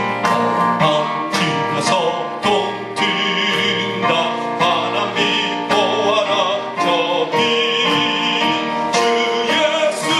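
A man singing a gospel song in long held notes with a wavering vibrato, over instrumental accompaniment.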